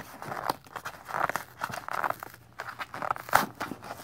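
Cardboard flaps of a tightly packed penny box being pried open by hand: irregular scraping, crinkling and small tearing of the cardboard, with a sharper crack a little after three seconds in.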